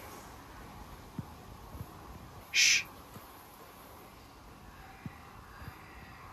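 Faint, indistinct whisper-like rushing sound in a cave passage, played back amplified, which the investigators heard as something between a breeze and whispering. One short, sharp hiss stands out about two and a half seconds in, with a few faint ticks around it.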